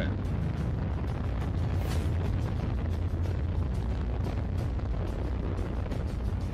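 Soyuz rocket's engines in powered ascent, heard from the ground as a steady, deep rumble with no letup.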